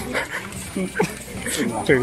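People talking and calling out, several voices overlapping, louder near the end.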